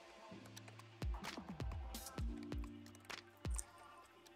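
Quiet background electronic music with a steady beat, about two thumps a second, under held low chords.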